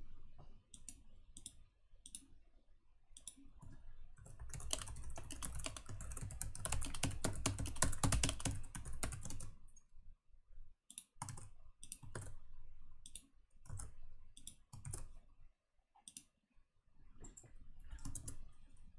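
Computer keyboard typing: scattered keystrokes, then a dense run of rapid typing from about four seconds in to nearly ten seconds, then sparse clicks again.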